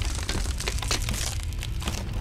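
Title-card sound effect of cracking, crumbling stone: a dense run of crackles over a steady deep rumble.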